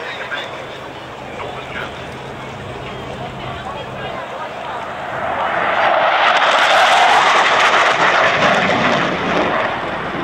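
Jet roar from two Panavia Tornado jets making a low pass. It builds about five seconds in, is loudest around seven seconds, and stays loud to the end.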